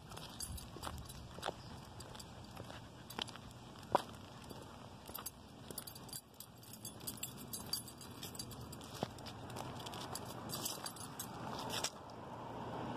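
Small metal jingling and clicking from a walking dog's harness and leash hardware, irregular and light, over soft footsteps on a concrete sidewalk. Passing traffic rises near the end.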